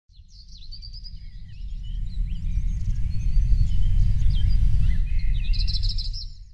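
Several birds chirping and calling in short, gliding whistles over a deep, steady low rumble that swells up over the first few seconds.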